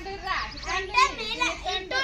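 Children's high voices talking and calling out in play.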